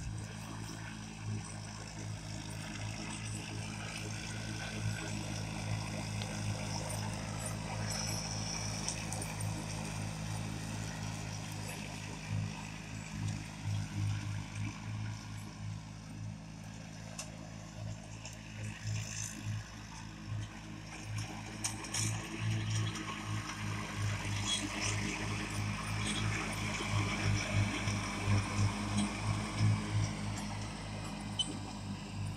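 1992 John Deere 316 lawn tractor's engine running steadily under load while it mows grass, louder near the end as the tractor comes close.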